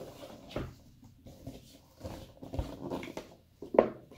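Cardboard keyboard box being handled and opened: scattered rustles and knocks of cardboard, with a sharper knock near the end.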